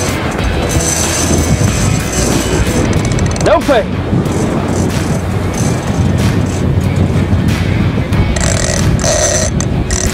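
Steady rumble of a Freeman 37 catamaran's outboard engines with wind and water noise while the boat is maneuvered on hooked fish, with background music laid over it.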